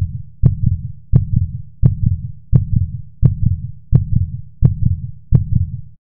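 Heartbeat sound effect: a steady lub-dub, about 85 beats a minute, each beat a pair of low thumps with a sharp click on the first.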